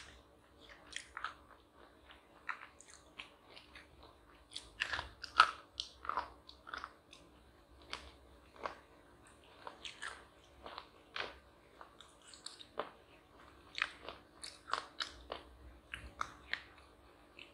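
Crunchy chocolate being bitten and chewed: irregular sharp crunches, the loudest about five and a half seconds in.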